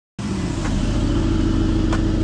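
Aston Martin DB11 engine idling: a steady low rumble with an even pulse and a constant hum.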